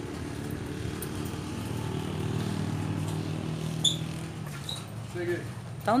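A motor vehicle's engine humming steadily, growing a little louder around the middle and fading near the end. A short high chirp about four seconds in.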